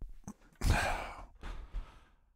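A man's long, breathy sigh, starting about half a second in and fading away over about a second, with a couple of faint clicks just before it.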